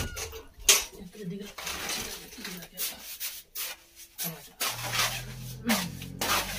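Plastering work: irregular scraping strokes and sharp clinks of a hand tool against a pan of plaster mix, with one loud clack under a second in. A low hum joins near the end.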